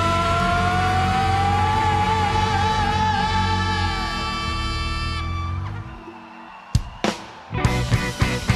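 Live rock band ending a song: a long sung note held over a sustained chord, dying away about six seconds in. Then a couple of sharp knocks and sound picking up again near the end.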